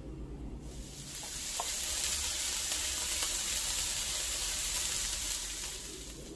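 Food frying, a steady sizzle that swells about a second in and eases off near the end.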